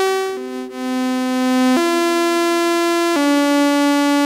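Sawtooth synthesizer tone passing through the VCA channel of an Abstract Data Wave Boss, playing a sequence of held notes that change pitch about every second and a half. Its level dips briefly about half a second in, then comes back up.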